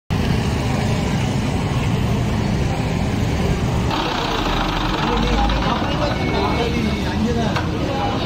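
Diesel tractor engines idling with a steady low rumble. From about four seconds in, people's voices are heard over the engine.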